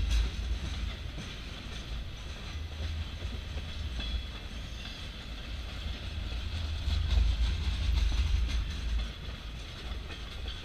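Empty bulkhead flatcars of a freight train rolling past: a steady low rumble of wheels on rail with faint clicks of wheels over rail joints, a little louder about seven seconds in.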